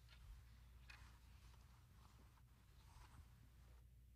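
Near silence: room tone with a low steady hum and a few faint rustles.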